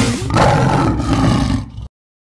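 A lion's roar sound effect, starting about a third of a second in, fading briefly near the end and then cutting off suddenly.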